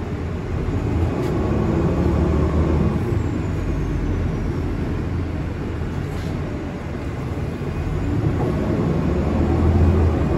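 Nova Bus LFS city bus running along the street, heard from inside the cabin near the rear door: a steady low engine and drivetrain rumble mixed with road noise, swelling louder about a second in and again near the end.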